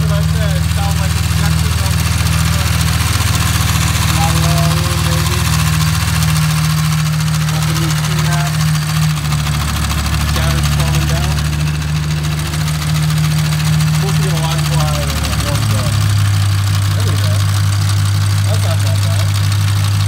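BMW N54 twin-turbo inline-six idling after a cold start, breathing through open cone air filters on its upgraded turbos. The idle note shifts to a different pitch about 15 seconds in.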